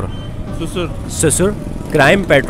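A man's voice speaking a few words, over a steady low rumble of street background noise.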